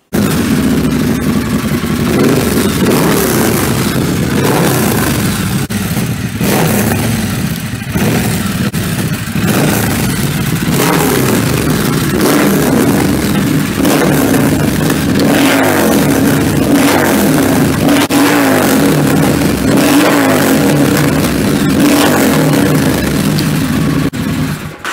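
Triumph Thruxton 1200's parallel-twin engine running through a TEC Raider stainless 2-into-1 exhaust. It holds a steady idle at first, then is revved several times in the second half, the revs rising and falling with each blip.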